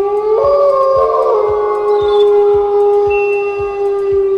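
Wolves howling: long, held howls overlapping at different pitches, one stepping up and falling back in the first second and a half. A steady low thumping beat runs underneath.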